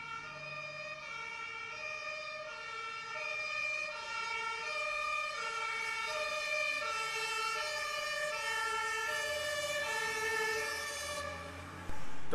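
Two-tone emergency-vehicle siren of the German kind, steadily alternating between a high and a low note, sounding for a blue-lit police van at a model street fire.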